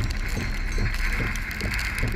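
Severe thunderstorm straight-line wind and heavy rain against a car, heard from inside as a steady rushing noise with faint irregular knocks.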